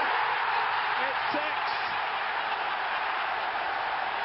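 Large football stadium crowd cheering a goal just scored, a steady dense noise of thousands of voices, with a brief spoken word about a second in.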